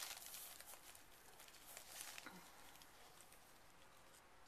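Near silence, with faint rustling from hands handling the bird and a wooden stick on cloth, slightly louder near the start and again about two seconds in.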